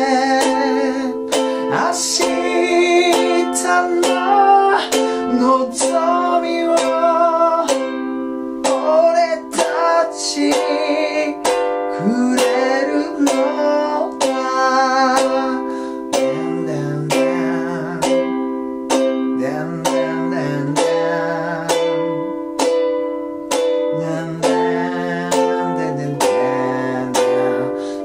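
A G-LABO Gazz-model ukulele strummed in a steady rhythm through the chords F, C, G7 and Am while a man sings along with vibrato. Near the end the singing drops out and the strumming carries on into an instrumental interlude.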